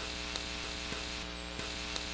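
Steady electrical mains hum with a faint static hiss on an otherwise silent recording, with a few faint ticks.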